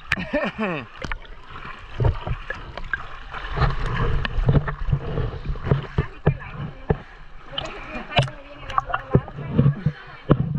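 Water sloshing and lapping against a camera held right at the water surface, with irregular splashes and sharp knocks of water hitting the housing.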